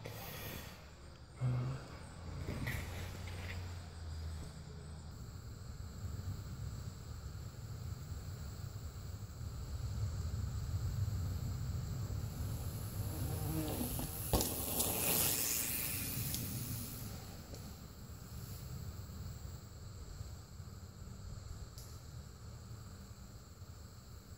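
Mountain bike ridden past on a dirt trail: a rushing hiss of tyres on dirt swells about halfway through and fades a few seconds later, with a sharp click as it passes, over a low steady rumble.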